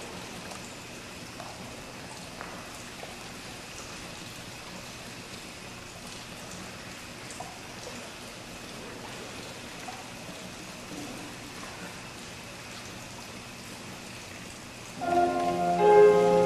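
Quiet church room tone, a steady faint hiss with a few scattered soft clicks. About a second before the end, instrumental music comes in loudly with several sustained chords.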